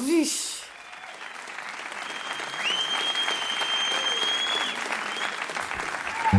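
Live audience applauding at the end of a song, the clapping swelling after about a second, with a long high whistle from the crowd in the middle.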